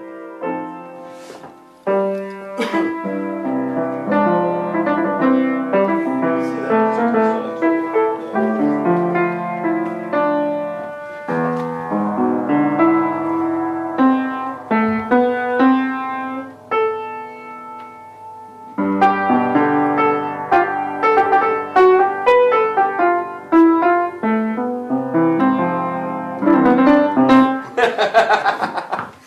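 Upright piano played by hand, a run of chords and melody notes, with a short break about two-thirds of the way through before the playing picks up again.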